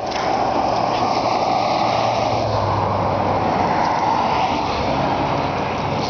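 Steady road-traffic rush from a passing motor vehicle, its low engine hum swelling about halfway through and then fading.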